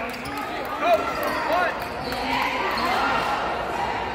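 Basketballs bouncing on a gym's hardwood floor, scattered irregular thuds, under a babble of players' voices in the gym.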